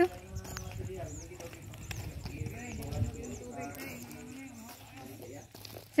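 Faint, distant voices talking over outdoor ambience, with small high chirps repeating throughout.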